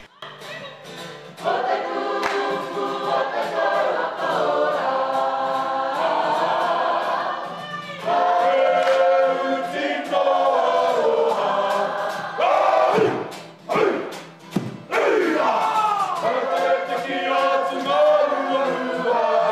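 Kapa haka group of men and women singing a Māori waiata together. The singing grows louder about eight seconds in, breaks off briefly twice, then resumes with falling, sliding notes near the end.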